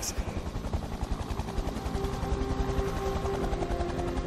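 Helicopter rotor noise, a fast, steady low pulsing. A few held tones come in about halfway through.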